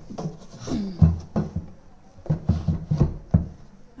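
A wooden drawer being worked out of an end table: a string of irregular knocks and clunks, about seven, as it slides and catches on its metal stop clip.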